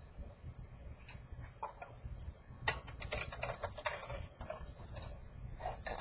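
Light irregular clicks and taps of a thin aluminium soda-can sheet and plastic die-cutting plates being handled and set down on a tabletop, a few at first and then a quick cluster in the middle, over a low steady hum.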